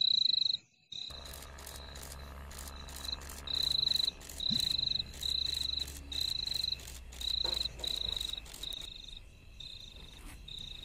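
A cricket chirping in short high-pitched trills, each about half a second long, repeating about once every 0.7 seconds. About a second in, a low steady rumble comes in underneath, together with fine ticking.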